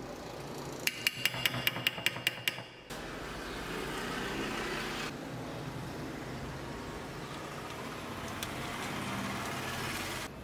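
A metal spoon tapping against a glass baking dish, about eight quick ringing clicks, then a pepper mill grinding black pepper steadily for the rest of the time.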